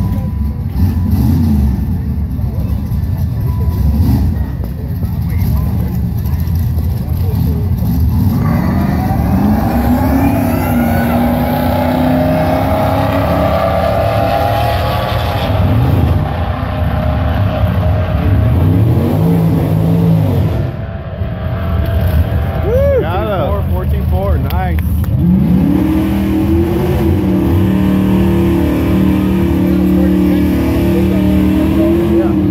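Drag race launch of a Ford SVT Lightning pickup and another car: engines rumble at the start line, then about eight seconds in they launch and accelerate hard down the strip, the pitch climbing in steps through gear changes and sweeping as they pass. Near the end another engine climbs in pitch and holds steady.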